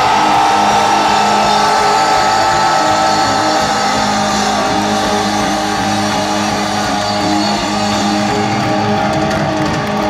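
Live rock band playing loud, with an electric guitar holding long sustained notes over steady bass and drums.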